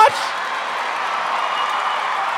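Live audience applauding.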